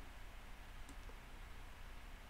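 A single faint computer-mouse click about a second in, over quiet room tone.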